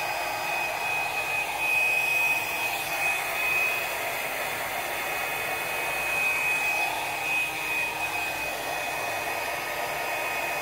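Handheld hair dryer running steadily, a constant rush of air with a thin high whine, blowing out wet acrylic pour paint on a canvas.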